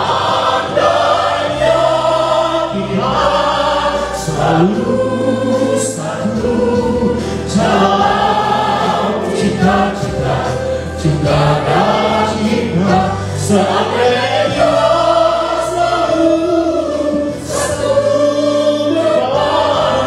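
A group of voices singing a gospel song together over steady backing music.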